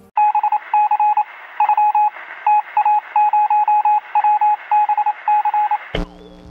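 Electronic beeps on a single fixed pitch pair, sounding thin and phone-like over a faint hiss, keyed on and off in an uneven run of long and short beeps like Morse code or signalling tones. They stop abruptly near the end with a short thump.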